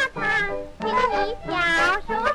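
Music from an old Chinese popular song: a high-pitched voice singing a melody with instrumental accompaniment.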